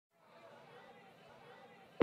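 Near silence in the gap between two songs, with a very faint sound from about a third of a second in. The music comes in suddenly right at the end.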